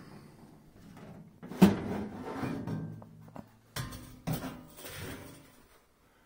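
Sheet-metal upper access door of a Lennox G43UF gas furnace being opened and lifted off: a sharp clunk about a second and a half in, then more knocks and rattles of the metal panel near four seconds.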